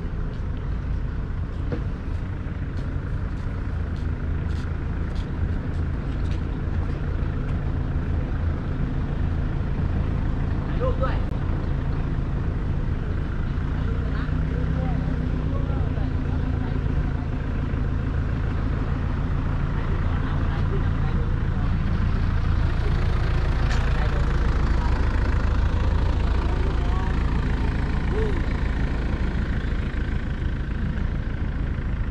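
Small pickup truck's engine running at low speed close by, a steady low hum that grows louder in the last third.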